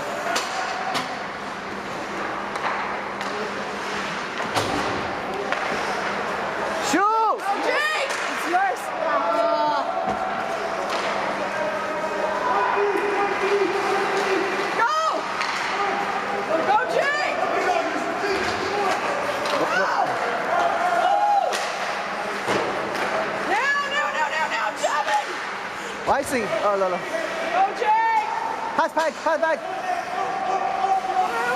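Ice hockey rink in play: voices shouting and calling throughout, with several sharp bangs of the puck, sticks or bodies hitting the boards and glass.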